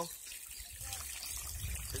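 Water trickling off the end of a sluice box and splashing into a plastic gold pan, faint and steady. It is a thin flow from slow water pressure.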